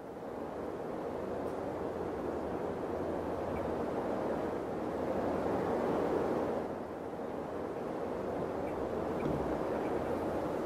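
A steady, wind-like rushing noise that fades in and swells, dips briefly about seven seconds in, then builds again.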